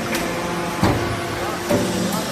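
Hydraulic metal-chip briquetting press running: a steady machine hum, broken by one sharp knock a little under a second in.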